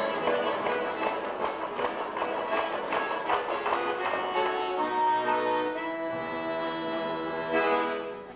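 Accordion playing the instrumental introduction to a folk song: a rhythmic chordal passage in the first half, then longer held notes.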